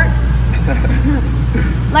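A person laughing briefly, over a steady low hum.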